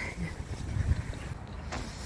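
Uneven low rumble of outdoor background noise picked up while walking with a handheld camera, with one brief louder bump about a second in.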